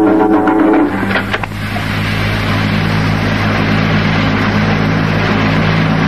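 Plucked loutar music breaks off about a second in, leaving a steady low hum with hiss, like the gap between two recordings in a medley.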